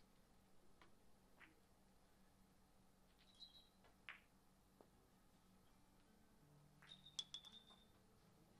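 Near silence with billiard ball clicks: a faint sharp click about four seconds in as the cue strikes the ball. A louder cluster of sharp, ringing clicks follows near the end as the balls collide.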